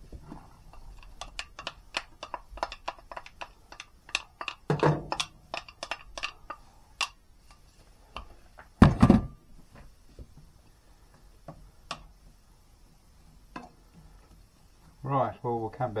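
Chopped onion frying in hot butter and olive oil in a frying pan, crackling in quick irregular clicks for the first several seconds. A single loud thump comes about nine seconds in, and brief voices are heard near the end.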